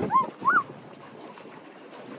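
Two short, high-pitched squeals from a small child, one right after the other in the first half-second, over a steady background hiss.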